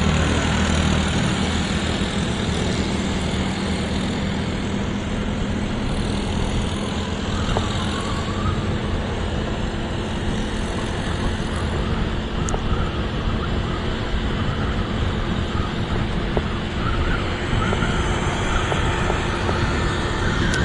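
Motor scooter riding in city traffic: its engine running and wind rushing past at a steady level, with other motorbikes around it.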